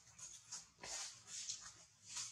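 Faint short breathy noises, about two a second, from a newborn macaque nursing at its mother's nipple, with light rustling of dry leaves.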